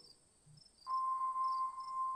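Faint night ambience of crickets chirping in short repeated high chirps, with a steady clear tone entering about a second in and holding.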